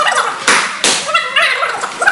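Two sharp slaps of an open hand striking a hand-held strike pad, about a third of a second apart, followed by a short vocal sound.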